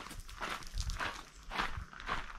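Footsteps of a person walking, a soft step roughly every three-quarters of a second.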